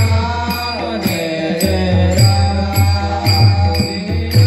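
Devotional kirtan: a male voice singing through a loudspeaker, backed by harmonium, a deep hand drum and regularly struck hand cymbals.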